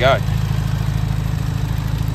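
2019 BMW M135i's turbocharged four-cylinder engine, fitted with an M Performance induction kit, idling steadily with the bonnet open: a low, even rumble.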